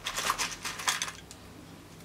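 A quick run of light clicks and rustles from hands handling fabric and a tape measure on a table, dying away about a second in.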